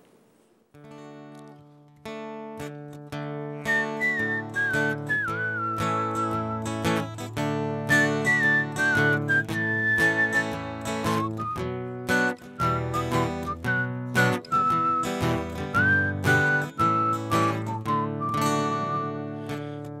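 Acoustic guitar strumming the opening of a song, starting about a second in, with a whistled melody over the chords from about four seconds in.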